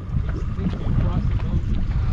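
Wind buffeting the microphone and choppy water slapping the hull of a fishing boat, a steady low rumble.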